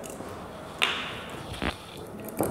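Two short, light knocks as bottles are handled on a lab bench, the first a little under a second in and a smaller one near the end.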